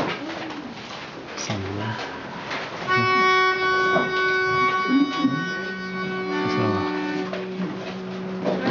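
A reed pitch pipe blown to give the choir its starting note: one steady, buzzy note held for about three seconds, starting a few seconds in. Singers then hum the note back, a lower voice holding it an octave below, over scattered chatter and laughter.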